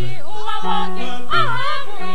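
Mixed choir of women's and men's voices singing a Christmas carol in harmony, with sustained notes and a high voice wavering in strong vibrato about halfway through.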